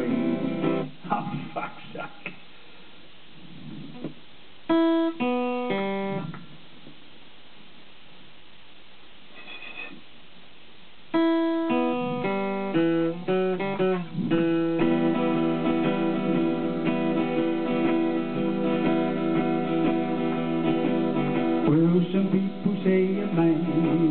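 Solo acoustic guitar in an instrumental break: strummed chords that stop after a couple of seconds, a few picked single notes, a long pause, then a picked single-note run that leads into steady strumming for the rest of the break.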